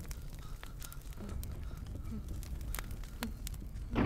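Film soundtrack of a burning torch: sparse, sharp crackles over a quiet, steady low rumble.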